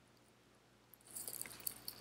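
Near silence, then from about a second in a faint rustle with a few small clicks as tarot cards are handled.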